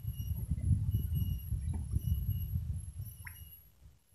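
Low, uneven rumbling noise on the microphone, dying away about three and a half seconds in, with faint thin high chirps above it.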